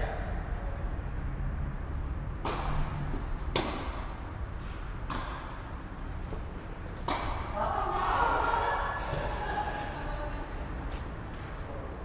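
Tennis rally on an indoor court: four sharp pops of the ball off racquets, roughly one to two seconds apart, echoing in the large hall. A short burst of voices follows the last hit.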